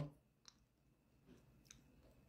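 Near silence: room tone with two faint short clicks, about half a second in and again near the end.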